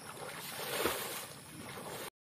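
Splashing water from a person swimming, arms churning the surface stroke after stroke, with the loudest splash just under a second in.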